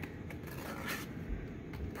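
Faint scraping and rustling of yarn being threaded under a cut strip of a paper cup and handled, with a few light clicks and a soft bump.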